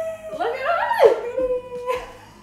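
Women laughing and squealing in high voices that slide up and down in pitch, with a steep drop about a second in and a held note near the end.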